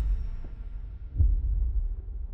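Slow, deep bass thuds like a heartbeat, one near the start and another about a second later, over a continuous low rumble: a cinematic heartbeat pulse in a trailer soundtrack.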